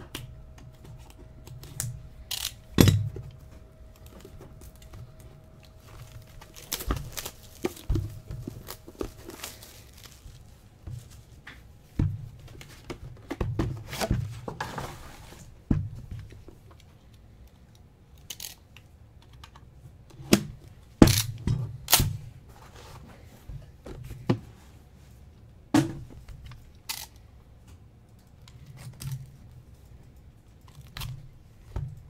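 Shrink wrap slit with a knife and pulled off a sealed cardboard box of trading cards, then the box opened and handled. Scattered rustles, scrapes and knocks, with a longer scraping rush about fifteen seconds in.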